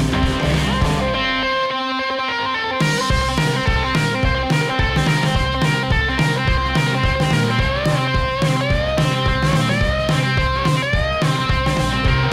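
Rock-style background music with electric guitar over a steady beat. The beat drops out about a second in and comes back just under three seconds in, and bent guitar notes slide upward in the second half.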